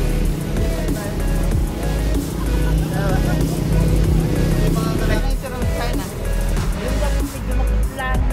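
Background music with a heavy, steady bass beat.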